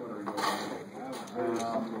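Indistinct voices of people talking, with a brief click about half a second in.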